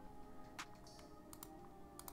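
Near silence with a few faint computer mouse clicks, over faint sustained background music.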